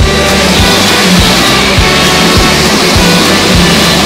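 Background music with a steady beat, over the rushing noise of an electric passenger train passing close along the platform.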